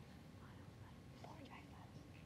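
Near silence in a quiet room, with faint whispering of students conferring among themselves, mostly in the second half.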